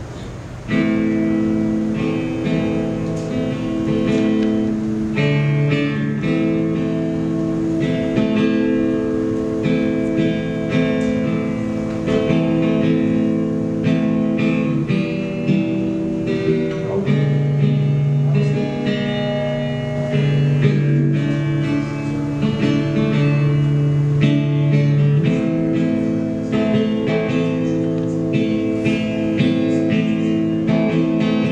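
Acoustic guitar strummed and picked in a slow chord progression, each chord ringing for a few seconds before the next: the instrumental opening of a ballad, before the vocal comes in.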